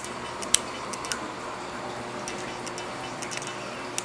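Steady background running-water and bubbling noise from a reef aquarium's circulation, with scattered faint clicks and drips.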